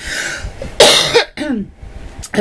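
A woman coughing: a short breathy lead-in, then one loud, sharp cough about a second in.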